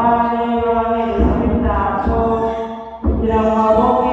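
Chanted prayer: a voice holding long, steady notes, with a brief pause about three seconds in before the chant resumes.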